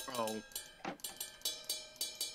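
Software drum samples from an FL Studio drum-pad kit playing short, even hits about four to five times a second, with a brief spoken "Oh" at the start.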